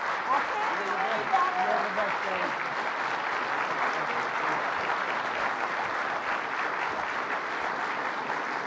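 Audience applauding, a dense, even clapping that holds steady throughout. A few voices can be heard faintly beneath it in the first two seconds or so.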